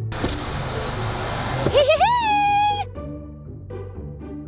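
A loud rush of air noise for under two seconds, wind pouring in as the car's power window is lowered, then a high voice crying out for about a second, over cheerful children's background music.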